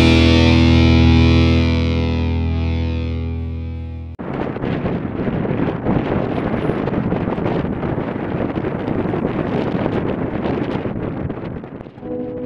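A distorted electric-guitar chord from rock intro music rings out and fades over about four seconds. It then cuts off suddenly into a steady, rough rushing noise.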